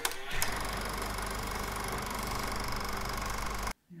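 Film projector sound effect: a steady mechanical whirr and rapid clatter over a low hum, starting with a click and cutting off suddenly near the end.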